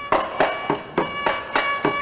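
Carnatic concert music: a violin plays sustained, gliding notes over sharp mridangam strokes, about three to four strokes a second.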